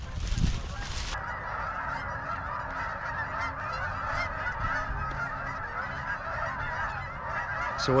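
A large flock of geese honking, with many overlapping calls forming a continuous chorus from about a second in. Just before that there are a few steps crunching through dry brush and leaves.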